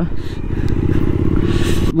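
Motorcycle engine running at a steady cruising speed, a constant low hum while riding along a gravel road.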